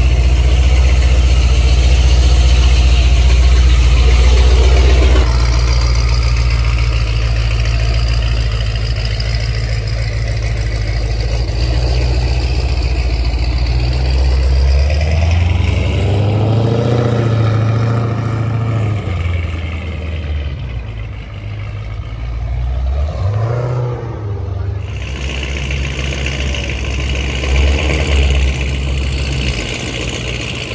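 Modified supercharged 6.2-litre Hemi V8 of a Jeep Grand Cherokee Trackhawk running with a deep exhaust rumble. Around the middle it pulls away at low speed, its pitch rising and falling with the throttle twice, then settles back to idle.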